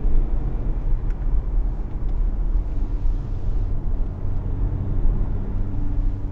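Cabin sound of a facelifted Audi A5 diesel under way: a steady low engine hum over tyre and road rumble, smooth and without diesel clatter.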